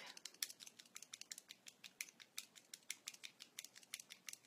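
A small liquid lipstick tube being shaken by hand: faint, rapid, irregular clicking, about eight clicks a second.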